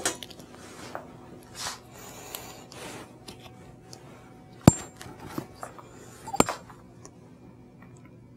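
A stethoscope being picked up from a metal instrument tray and handled: soft rustling and handling noises, with two sharp metallic clinks under two seconds apart as its metal parts knock together.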